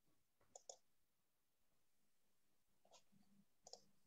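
Near silence with a few faint clicks: two close together about half a second in, and two more near the end.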